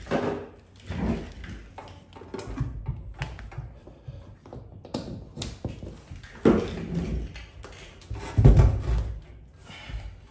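Irregular knocks, taps and thumps from hands and a tool working on a bench knife sharpener's paper wheel and housing. The heaviest thumps come about six and a half and eight and a half seconds in.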